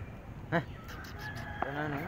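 Animal calls: a short, sharp call about half a second in, then a longer call with a wavering pitch near the end.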